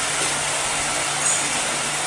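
Steady hiss with a low, even hum underneath: the background noise of the recording, left plain in a pause between words.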